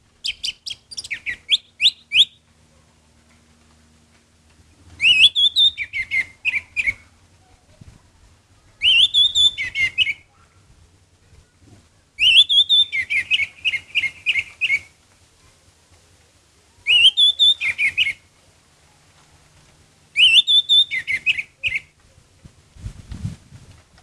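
Orange-headed thrush singing: six phrases a few seconds apart, each opening with a rising whistle and breaking into a quick run of notes that drop lower.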